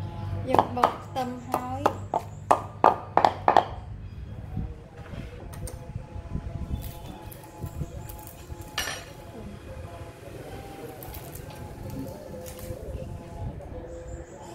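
Wooden pestle pounding fermented fish paste (prahok) with shallots and garlic in a mortar: about ten quick strikes in the first four seconds, then the pounding stops.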